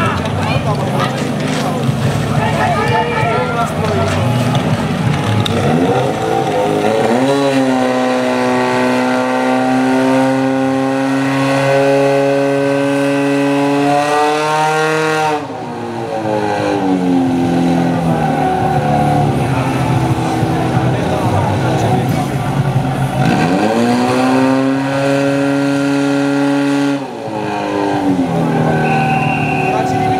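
Portable fire pump's petrol engine revving up to full throttle about seven seconds in and holding a high, steady note while it drives water through the hoses to the nozzles; its pitch falls and climbs again a few times. Voices and shouting fill the first few seconds.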